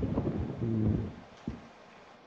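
A man's voice giving a short, level hum in the first second, then quiet room noise broken by one soft thump about one and a half seconds in.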